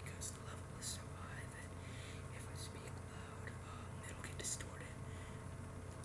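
A man whispering softly into a handheld microphone, faint and breathy, over a steady low hum.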